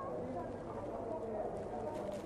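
Quiet hall ambience with a faint low murmur and no distinct event.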